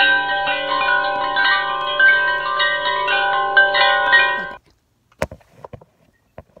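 Tinkling wind-chime music, many overlapping bell tones struck one after another, which cuts off abruptly about four and a half seconds in. A few faint clicks follow.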